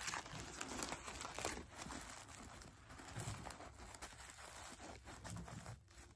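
Tissue paper crinkling and rustling irregularly as scrunchies are pushed into a gift cup lined with it.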